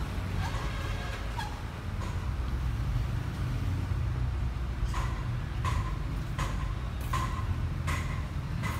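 Footsteps at a steady walking pace, about one every 0.7 seconds, starting about five seconds in, over a steady low rumble.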